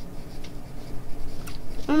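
Graphite pencil scratching on drawing paper as lines are sketched, in short uneven strokes.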